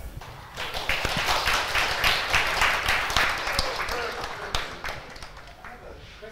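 Audience applauding, starting about half a second in and dying away near the end.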